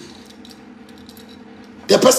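A short pause in speech holding only a faint steady hum and a few light clicks, before a man's voice comes back in near the end.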